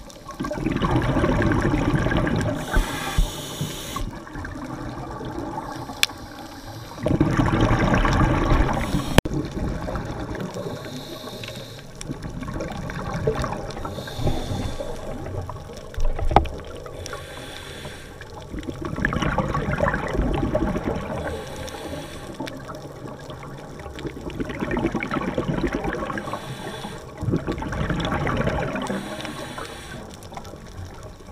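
Scuba diver breathing underwater through a regulator: exhaled air bubbling out in gurgling bursts of two to three seconds, roughly every six seconds, with a low rumble between breaths. A few sharp clicks are heard.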